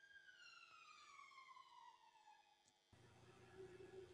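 Near silence, with a faint pitched tone slowly falling in pitch; a faint hiss comes in about three seconds in.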